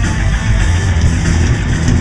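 Thrash metal band playing live and loud: distorted electric guitars, bass guitar and drums in a dense, unbroken wall of sound.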